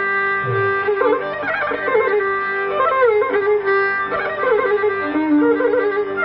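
Carnatic classical instrumental music on strings: a melody of sliding notes with quick oscillating ornaments (gamakas) over a steady held note.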